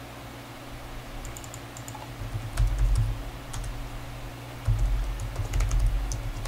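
Typing on a computer keyboard: a few scattered keystrokes at first, then quicker runs of keys with dull thuds from about halfway, as a name is typed into a form field.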